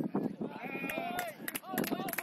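Several people shouting on a football pitch: overlapping drawn-out cries during a goalmouth scramble, rising and falling in pitch.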